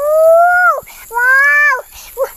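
Two long, high vocal cries, each rising and then falling in pitch and lasting under a second, with a short gap between them.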